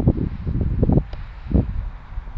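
Wind buffeting the microphone in gusts, heavy for about the first second and then easing off, with a couple of brief knocks.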